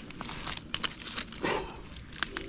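A hand sifting through broken glass, pottery shards and metal junk. Pieces shift against each other in a scatter of light clicks and clinks, with a short rustle about midway.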